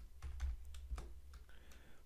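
Computer keyboard being typed on: a run of separate, quick keystroke clicks over a low steady hum.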